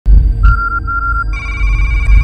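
Electronic intro music: a deep, loud bass drone under a rapidly pulsing synthetic beep, which gives way a little over a second in to a steady, higher electronic tone.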